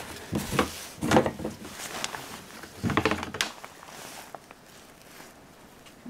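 Snowmobile fuel cap being twisted off and handled at the tank filler, a few short knocks and scrapes in the first half, then quiet.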